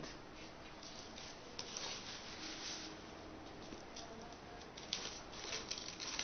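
Loose potting soil being put by hand into a small plastic cup: a faint rustle and patter of grains with a few light ticks.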